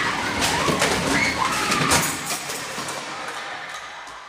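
Chaotic classroom commotion: raised voices and the clatter of thrown objects and chairs striking and falling, dense at first and dying away over the last second or two.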